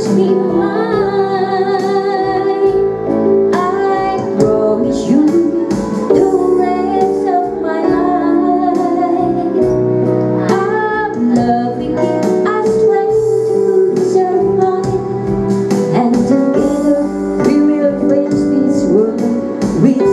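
A woman singing a slow song into a microphone with vibrato on held notes, accompanied by sustained chords on a Yamaha electronic keyboard.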